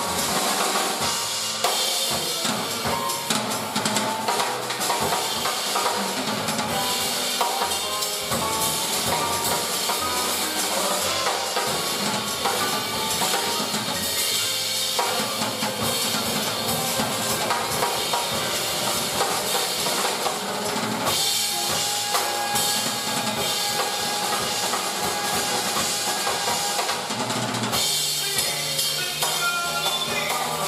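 Jazz trio of piano, upright bass and drum kit playing an instrumental passage, with the drums prominent: busy cymbal and snare strokes over piano chords.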